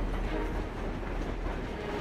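Train running along the rails: a steady low rumble, as a cartoon sound effect.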